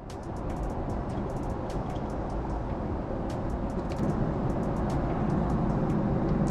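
Steady rushing cabin noise of a Boeing 777-300ER airliner in cruise, heard from a window seat. It fades up at the start and grows slowly louder.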